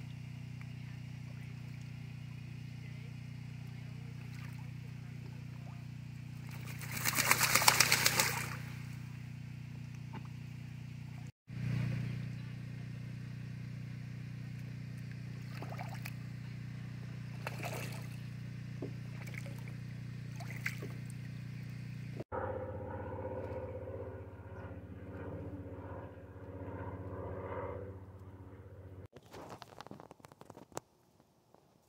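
Domestic ducks bathing in a plastic kiddie pool fed by a garden hose: water trickling and splashing, with a loud burst of splashing about seven seconds in.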